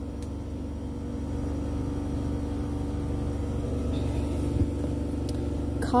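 Shopping cart rolling over the store floor: a steady low rumble of the wheels, with a faint steady hum under it.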